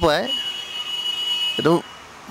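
A steady, high-pitched whistle-like tone is held for over a second between short bits of a man's voice.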